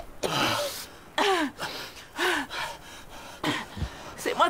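People gasping for breath and coughing: several short, separate gasps, some breathy and some voiced with a falling pitch, about a second apart.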